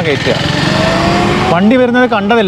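Electric scooter accelerating hard in Sport Mode: a thin motor whine rising slowly in pitch as speed builds, over a rush of wind and road noise.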